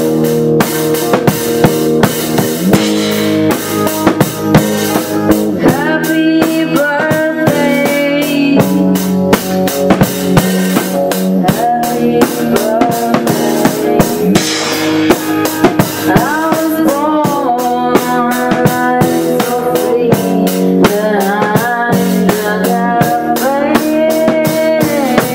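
A rock band playing live, with guitar chords over a drum kit's steady beat of bass drum and rim hits. A melody line glides and bends in pitch above the chords through much of the passage.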